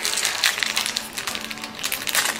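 A trading card pack's wrapper crinkling and rustling as it is torn open by hand, with a dense run of irregular crackles. Faint music plays underneath.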